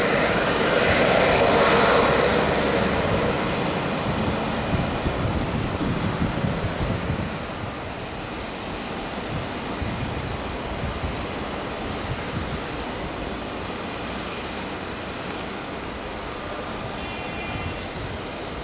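Embraer E195 airliner's twin jet engines at taxi power, loudest as the aircraft passes close by in the first few seconds, then quieter and steady as it taxis away.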